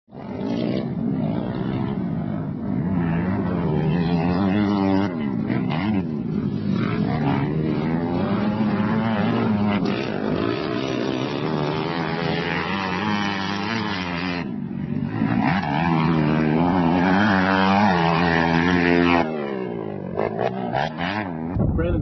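Four-stroke motocross bike engine revving hard and falling back again and again as the rider accelerates, shifts and corners, its pitch rising and dropping in repeated sweeps. The engine sound cuts off abruptly a few seconds before the end.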